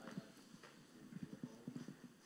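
Faint footsteps on a hard floor: a short run of soft, irregular steps over quiet room tone.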